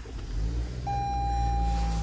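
A 2022 Toyota Corolla Cross's two-litre four-cylinder engine starting from the push button and settling into a steady idle. A steady single electronic tone comes on just under a second in and holds.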